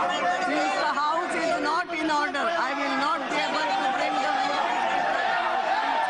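Many voices shouting and talking over one another at once: the uproar of members in a parliamentary chamber.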